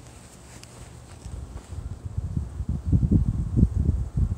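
Wind buffeting the phone's microphone, starting quiet and building after about two seconds into irregular low rumbling gusts.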